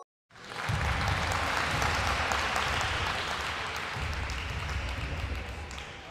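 Crowd applause sound effect: many hands clapping in a dense patter. It swells in just after the start and fades away near the end, marking the reveal of a correct quiz answer.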